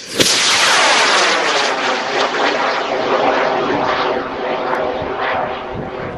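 Gorilla K222WC high-power rocket motor igniting about a fifth of a second in, with a sudden loud rushing noise that slowly fades and wavers in pitch as the 54mm rocket climbs away.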